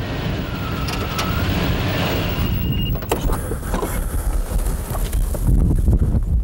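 Pickup truck driving slowly over grassy pasture: the engine runs steadily, with tyre noise over the grass.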